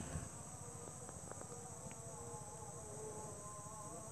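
Faint insect sounds: a steady high trill like crickets, with a thin wavering whine of a flying insect.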